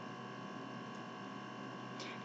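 Faint, steady background hiss with a few thin, constant electrical tones: the recording's room tone in a pause between spoken lines.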